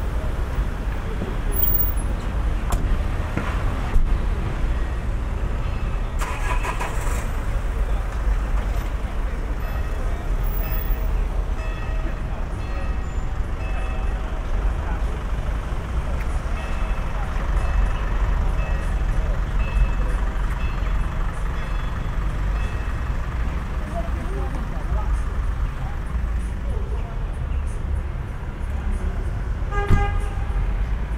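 Town street ambience: a steady rumble of car traffic, with people talking in the background and a louder passing noise about six seconds in.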